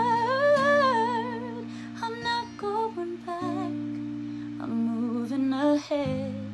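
A woman's wordless vocal line with vibrato, then short ad-lib notes, sung over an acoustic guitar chord left ringing. The chord is struck again about three and a half seconds in.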